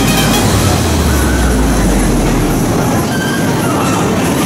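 Bumper cars running on the rink: a steady rumble of wheels and electric motors with a low hum in the first half, and music playing under it.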